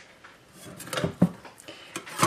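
Metal spatula scraping and knocking against a glass baking dish as it is pushed under a square of set fudge, a few short scrapes about a second in.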